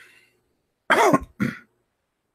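A man clearing his throat: two short, rough voiced bursts about a second in.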